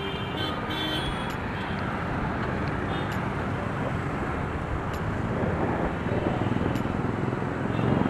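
Road traffic and wind noise picked up by a bicycle-mounted action camera while riding in city traffic: a steady rumbling haze with a few faint clicks.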